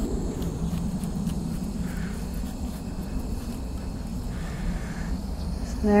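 Steady low outdoor rumble, with faint scattered ticks as a knife cuts through a melon's rind.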